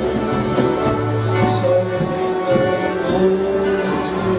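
Live dance band playing: several accordions hold chords over guitar, bass guitar and drums, in a steady, unbroken stretch of music.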